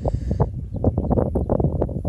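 Wind buffeting a phone's microphone in a low rumble, with many small irregular knocks and rustles as the phone is handled.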